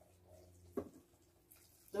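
Quiet room with a faint low steady hum and one brief faint sound about a second in, before a woman exclaims "ooh" at the very end.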